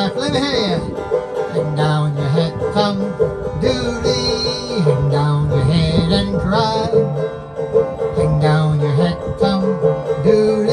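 Banjo being picked, playing a folk tune with a steady beat.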